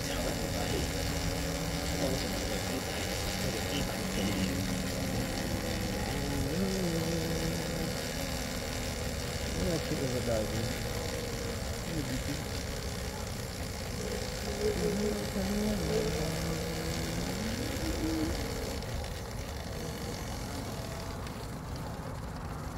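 Steady low rumble of wind and movement while riding a bicycle, under voices of people talking nearby, with a short laugh and an "oh!" about ten seconds in.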